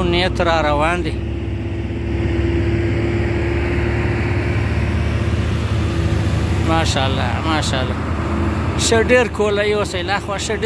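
Diesel engines of a convoy of loaded Hino trucks climbing a hill road, a steady low rumble with a held hum through the middle.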